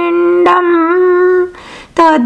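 A woman singing a Sanskrit devotional hymn, holding one long steady note that ends about one and a half seconds in, followed by a short breath before the next phrase.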